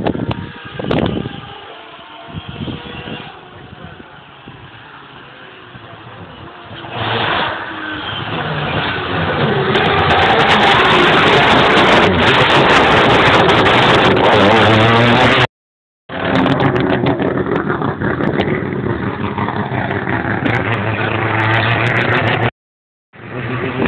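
Mazda3 race car with a 20B three-rotor rotary engine coming up at speed, its sound rising from about seven seconds in and loudest as it passes. The recording cuts out briefly, then the engine is heard again running loud with a steady note.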